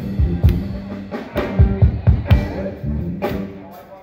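Live rock band playing through a PA: drum kit hits over electric guitar and bass. The music drops away in the last second.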